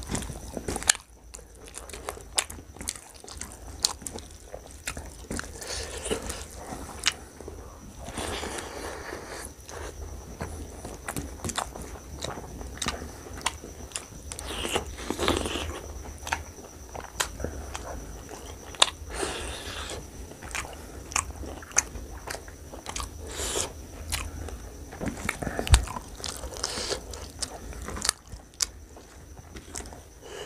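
Close-miked chewing and lip smacking of a person eating mutton curry with rice by hand, with many sharp wet clicks, along with the soft squish of fingers mixing rice into the gravy on the plate.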